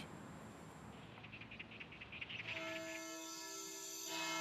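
Faint background music: a soft, rapid ticking gives way about two and a half seconds in to a sustained chord that holds steady.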